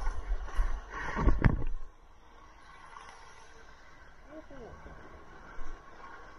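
Whitewater rushing and splashing over a surfboard right against the action camera, with heavy low rumble, for about the first two seconds, then giving way to a quieter steady wash of water.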